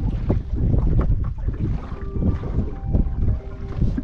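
Wind buffeting the microphone in an open boat: a steady low rumble, with a few light taps.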